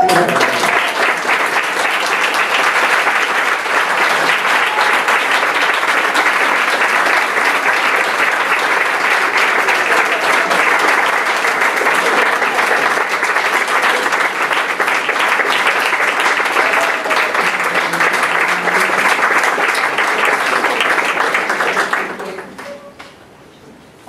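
A seated audience applauding steadily for about twenty seconds, then dying away at the end.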